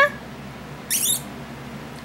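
A kitten's short, high squeak rising in pitch, about a second in.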